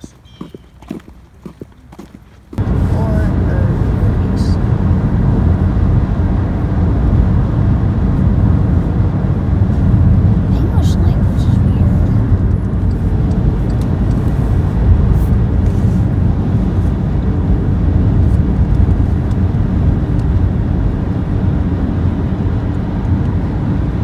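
Loud, steady rumble of wind and road noise inside a moving car, starting suddenly about two and a half seconds in.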